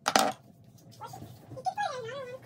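A pet animal whining in a high, wavering pitch that rises and falls, starting about halfway through, after one short sharp sound just after the start.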